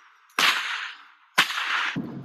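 Two sharp cracks about a second apart, each trailing off quickly, from a whip or long stick being cracked.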